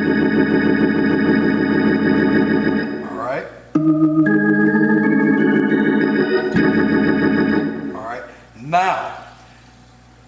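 Hammond organ holding a sustained chord, F in the bass under E♭-A♭-A-D♭ and a G♭ chord, that stops about three seconds in. A second held chord follows, B♭ in the bass under D-G♭-A♭-D♭ and A♭-B♭-E♭, with its bass notes shifting once or twice before it dies away about eight seconds in.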